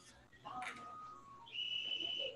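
A faint, steady, high whistle-like tone lasting about half a second in the second half.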